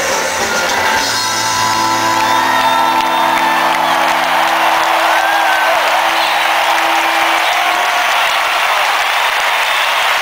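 Live rock band in a stadium holding a final sustained chord that stops about seven and a half seconds in, with a large crowd cheering and whooping throughout and carrying on after the music ends.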